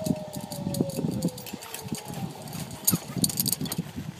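Zipline trolley running along the steel cable: a thin whine that slowly falls in pitch and fades about a second and a half in, with metallic clinking and rattling of clips and gear throughout.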